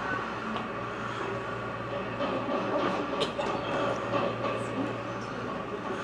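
Steady low hum under a constant background noise, with a few faint clicks.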